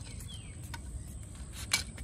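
Landing net being handled on paving stones while a fish is held in it: a few faint clicks and light knocks, one sharper near the end, over quiet outdoor background with a faint short chirp early on.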